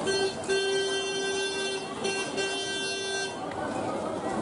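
A vehicle horn honking on one steady note: a short toot, a long blast of about a second and a half, then two shorter ones, stopping a little before the end.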